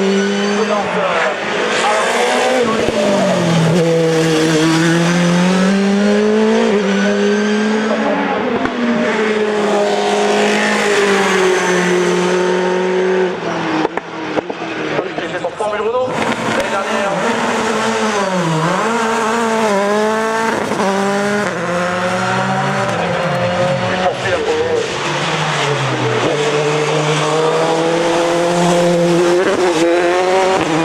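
Mercedes-engined Dallara Formula 3 single-seaters at full throttle up a hill climb. The engine note repeatedly rises in pitch through each gear and drops at each upshift. The sound breaks briefly about halfway through as one car gives way to the next.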